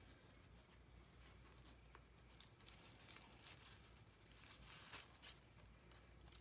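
Near silence, with faint rustles and light taps from paper and satin ribbon being handled.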